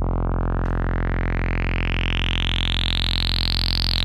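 Low sawtooth drone from a software synth oscillator, filtered through ten chained Playertron Jadwiga one-pole filters forming a 10-pole, 60 dB-per-octave filter with its resonance turned up. A bright, whistling resonant peak glides steadily upward in pitch over the drone.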